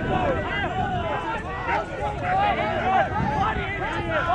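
Several voices talking and calling out at once, overlapping, from players watching a point of ultimate frisbee.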